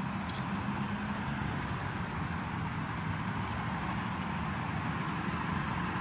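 Steady low hum of idling vehicle engines with road traffic noise, unchanging throughout.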